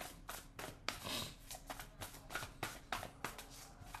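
Tarot cards being shuffled and handled by hand: an irregular run of light card snaps and taps, with a short slide of card on card about a second in.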